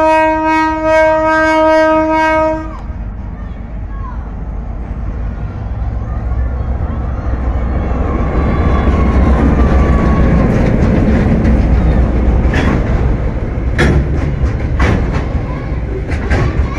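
Diesel freight locomotive's horn sounding one long chord that cuts off about three seconds in. The locomotive's engine rumble then builds as it passes close by, and its freight wagons roll past with a few sharp clacks of the wheels over the rail joints near the end.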